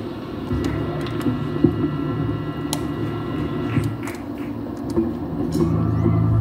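Live band's amplified stage sound between songs: a steady low amplifier hum with held electric guitar tones ringing over it and a few scattered clicks. The low drone swells near the end as the next song begins.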